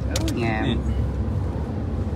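Steady low road and engine rumble heard inside a moving van, with two short clicks near the start.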